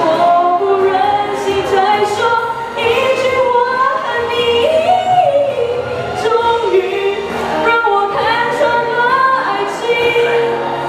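A girl singing a Chinese song into a microphone, holding and gliding between notes, over backing music.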